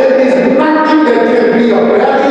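A man's loud voice preaching, drawn out on long, steady pitches.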